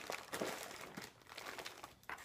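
Plastic candy and trail mix wrappers crinkling as hands dig through a box full of them, in irregular crackles that thin out toward the end.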